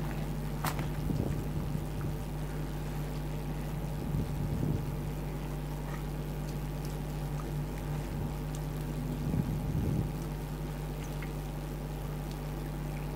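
Wet squishing of hands rubbing thick masala marinade into a whole raw chicken, in a few short spells, over a steady low hum.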